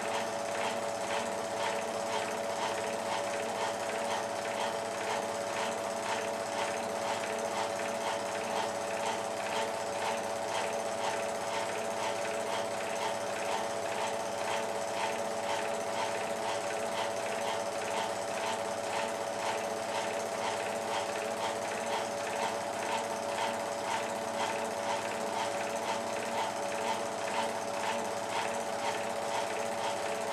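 Cine film projector running: a steady, fast mechanical clatter from the film-advance mechanism with a constant hum, unchanging throughout.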